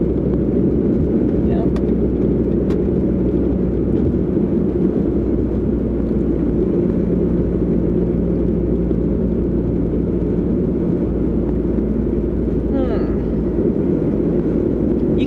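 Steady low rumble of road and engine noise inside a car's cabin, with a couple of faint clicks early on and a brief voice sound near the end.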